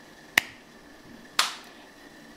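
Two sharp clicks about a second apart, the second trailing off briefly.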